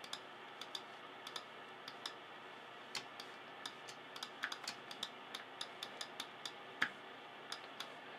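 Light, irregular clicking of a computer mouse, a few clicks a second, over faint steady room hiss.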